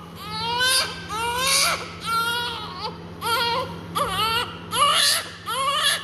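A newborn baby a couple of minutes old crying, a string of short wails about one a second. A steady low hum runs underneath.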